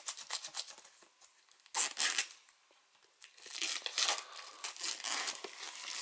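Plastic shrink-wrap on a Blu-ray steelbook being picked at and torn open: irregular crinkling and tearing in bursts, with a short pause near the middle.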